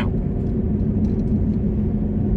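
Inside a car's cabin: a steady low rumble of engine and road noise, with a constant engine hum.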